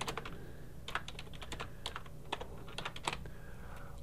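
Computer keyboard typing a few words: a run of irregular key clicks, with a short pause about half a second in.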